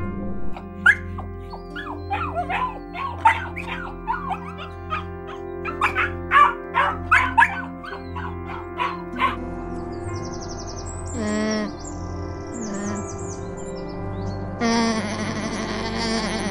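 Puppies yipping and whimpering in quick, high-pitched little cries for about the first nine seconds, over soft background music. After that come a few scattered short sounds, and a longer buzzy sound starts near the end.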